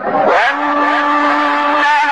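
Male Quran reciter's voice chanting in the melodic tajweed style, gliding up into one long held note about half a second in.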